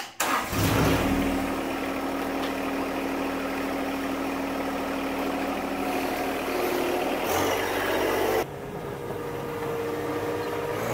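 John Deere sub-compact tractor's three-cylinder diesel starting right away and settling into a steady idle. About eight and a half seconds in, the sound cuts abruptly to the tractor's engine running outdoors at a different pitch.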